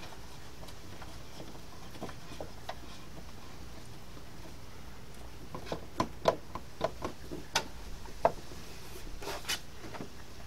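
Light clicks and taps of a metal TV mount bracket being handled and fitted against the back of a flat-screen TV: a few faint ones at first, then a quick, irregular run of sharper clicks in the second half.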